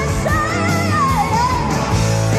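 Live rock band playing, with a woman's lead vocal over the band and electric guitar; her sung line wavers and slides downward in the second half.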